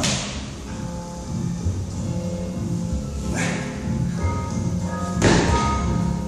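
Background music in a gym, broken by thuds. The loudest thud comes a little after five seconds in, typical of an athlete dropping from gymnastic rings and landing on a rubber gym floor.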